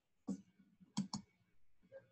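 Three short, sharp clicks: one about a third of a second in, then a quick pair about a second in.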